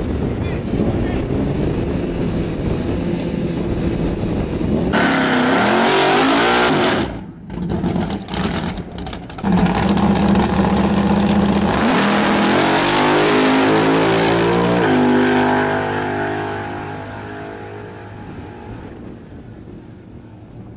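Drag-racing muscle car engine revving at the start line, then held at a loud steady note. It launches about halfway through and rises in pitch through the gears, with a gear change about three quarters in. It fades as the car runs away down the strip.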